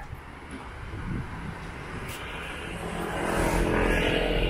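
Motor vehicle engine running with road noise, heard from a moving vehicle; the steady hum grows louder toward the end.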